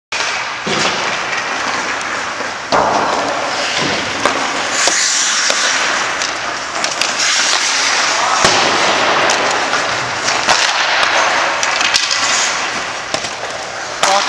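Ice hockey skates scraping and carving on rink ice, with a steady hiss and many irregular sharp clacks of the stick blade on the puck.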